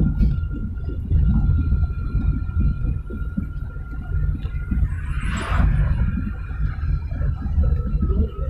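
Low, steady rumble of a car's engine and road noise heard from inside the cabin while driving. About five seconds in, a brief rushing hiss as an oncoming car passes.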